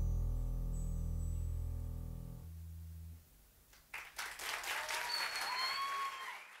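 The band's final held chord fades and stops about two and a half seconds in. After a short pause, an audience breaks into applause, with cheering and a whistle over the clapping.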